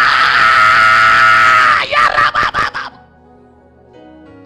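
A loud, wordless human cry held on one pitch for about two seconds, then a few short cries that cut off about three seconds in. Soft sustained instrumental music carries on underneath and is left alone after the cry stops.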